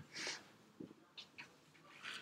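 Mostly quiet room tone with a soft breath just after the start, then a few faint ticks of a stylus on a tablet's glass screen as a letter is handwritten.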